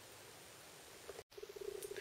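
Faint workshop room tone. About a second in, after an abrupt cut, a faint low hum with a rapid fluttering pulse begins.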